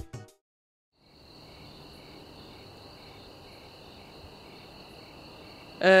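Background music fades out at the start, then after a moment of silence a steady chorus of crickets chirping sets in about a second in as a night ambience. A voice starts right at the end.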